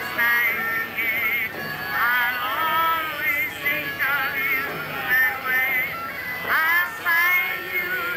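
A group of people singing together, with a voice carried through a hand-held megaphone; the held notes waver in pitch.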